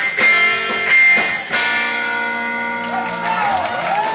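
Rock band playing live: electric guitar and drums, with a few drum hits early, then a chord held and ringing from about halfway, and a sliding, wavering note near the end.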